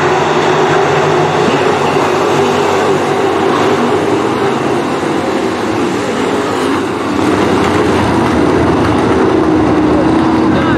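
Several dirt-track stock car engines running hard as the pack laps the oval, a loud, continuous drone that dips slightly about seven seconds in.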